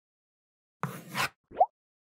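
Title-card sound effects: a short swoosh about a second in, followed by a quick pop that rises in pitch.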